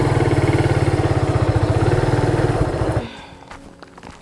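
Classic-style motorcycle engine running with a steady, rapid beat. It cuts off abruptly about three seconds in, leaving only faint quiet outdoor sound.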